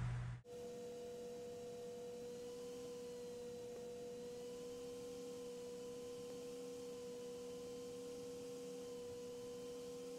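A faint, steady pure tone held at one mid pitch, with fainter steady tones around it. It starts suddenly about half a second in.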